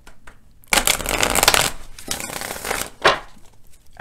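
A deck of tarot cards being shuffled overhand by hand, a dense papery rustle of cards sliding and slapping together for about two seconds, then one short sharp snap about three seconds in.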